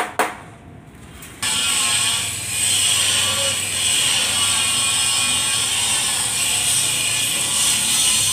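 Steady hissing power-tool noise from metalwork on a bus body, starting abruptly about a second and a half in after a short quieter stretch.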